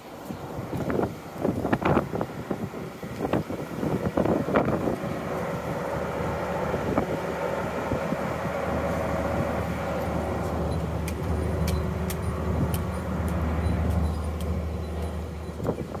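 Nippon Sharyo portable diesel generator running steadily, its low engine hum growing louder about halfway through. Wind gusts on the microphone during the first few seconds.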